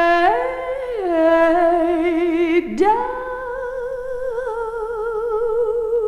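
A woman singing long held notes with vibrato. The pitch rises and falls back within the first second or so, then after a short break about two and a half seconds in she holds a new note steadily, its vibrato widening, over a faint backing.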